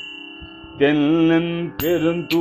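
A man chanting a Tamil Saiva devotional hymn in a melodic, Carnatic-style line. After a short pause he holds one long note from about a second in. Sharp strikes keeping time about twice a second come back near the end.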